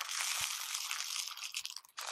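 Small clear beads pouring into a square glass container, a dense continuous rattle that thins out and stops near the end.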